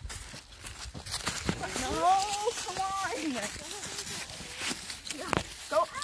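Footsteps rustling through dry leaf litter, with an indistinct voice talking about two to three and a half seconds in.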